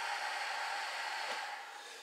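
A 12-volt DC centrifugal blower fan on a homemade magazine barrel cooler, running and blowing a lot of air with a steady hiss that fades near the end.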